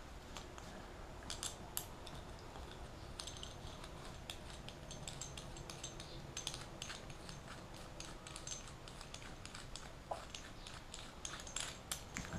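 Small irregular clicks and light rustling of fingers handling a PL259 coax connector and wrapping tape around its tail, over a faint steady background hum.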